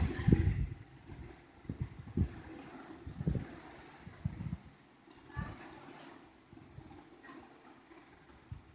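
Faint low rumble with scattered soft thumps and no speech.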